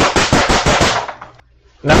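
One person clapping hands quickly, about eight claps a second, fading out about a second in.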